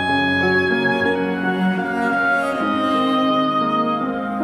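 Oboe, cello and piano playing a slow melody together in long, held notes.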